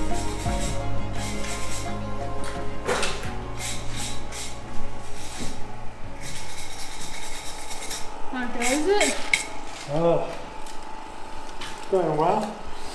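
Hand brush scrubbing granite stones in repeated rasping strokes, under background music that fades out in the first few seconds.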